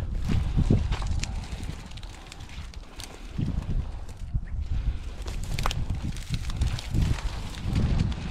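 Footsteps and rustling through tall dry weeds, an uneven low swishing with a few sharp clicks.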